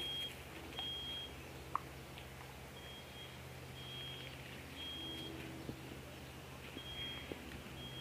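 Faint, high-pitched electronic-sounding beeps, each about half a second long and all on the same pitch, repeating roughly once a second with a few gaps, over a steady low hum.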